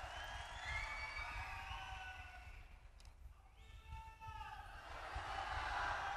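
Large rally crowd cheering, with several drawn-out shouts overlapping one another and a swell of crowd noise near the end.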